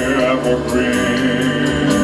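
Instrumental backing music for a crooner's ballad, held chords over a steady beat, playing between sung lines.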